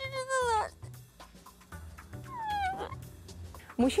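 A boy crying and wailing. One long, high wail falls in pitch and breaks off under a second in, and a shorter falling cry comes about two and a half seconds in, over background music with a low beat.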